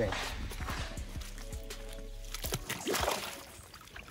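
Water sloshing and splashing as a large fish is lowered into the water and released, with background music playing throughout.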